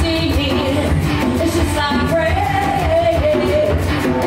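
Live rock song played on electric and acoustic guitar, with a melodic line that bends and holds a long note in the middle.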